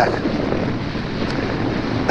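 Steady wind blowing across the microphone, a continuous noise with no distinct events.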